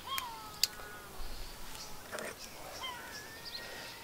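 A few faint animal calls, each rising then falling in pitch, with a couple of light clicks from the just-opened aluminium beer can being handled.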